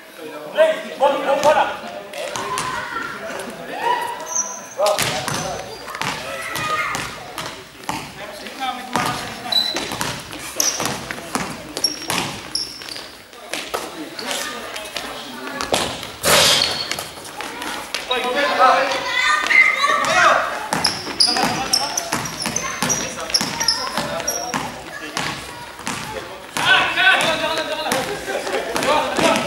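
A basketball bouncing on a sports-hall floor during play, with players' voices calling out throughout, all echoing in a large gym.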